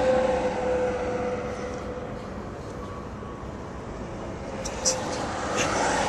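Road noise inside a car moving at highway speed: a steady rush of tyre and wind noise with a droning hum, loud at first and easing off over the first couple of seconds.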